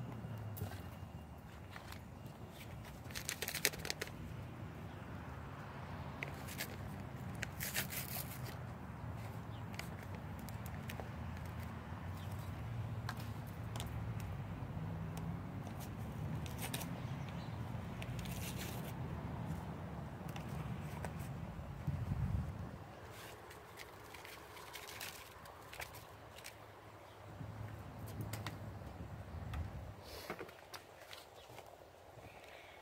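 Paper seasoning packets being torn open and shaken out, with short crinkling and tearing sounds a few times, over a steady low rumble that drops away about two-thirds of the way through.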